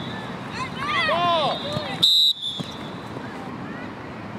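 Children shouting during a flag football play, then a short, loud whistle blast about two seconds in, typical of a referee's whistle stopping the play.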